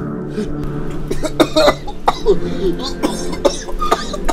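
A person coughing in a series of short, harsh bursts over a low, steady music drone.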